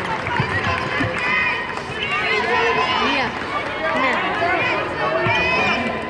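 Basketball shoes squeaking on a hardwood court in many short chirps that bend up and down, with the thuds of players' running footsteps, over crowd chatter in the arena.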